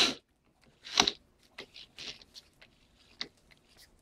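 A power drill with a hole saw stops right at the start, then scattered light clicks and crunching of wood and tool handling at the freshly bored hole in the door; the loudest is a sharp click about a second in.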